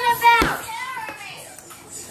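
A child's voice, high and briefly sung or exclaimed in the first half second, with a sharp knock just after, then quieter.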